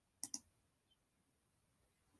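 Two quick clicks of a computer mouse button, a fraction of a second apart, near the start; otherwise near silence.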